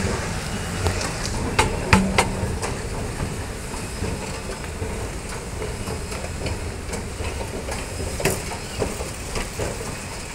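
OTIS escalator running while being ridden down: a steady low rumble and clatter from the moving steps, with a few sharp clicks about two seconds in.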